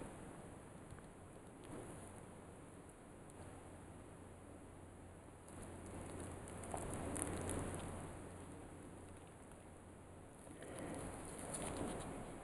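Faint rustling and handling noise as fingers hold and turn a plastic mesh hair catcher, swelling a little in the middle and again near the end.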